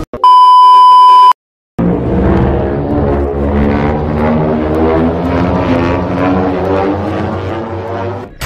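A loud 1 kHz test-pattern tone over colour bars, held for about a second and cut off abruptly. After a short silence comes a steady, dense drone with many held pitches.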